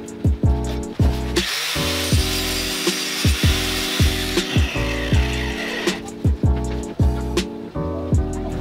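Angle grinder cutting into a car sun visor's mounting bracket: a harsh, hissing grind that starts about a second and a half in and lasts about three seconds. Background music with a heavy beat plays throughout.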